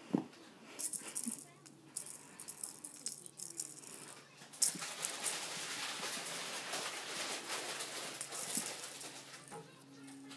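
A kitten's rattle toy shaken and batted about on carpet: scattered short rattles at first, then continuous rattling from about five seconds in.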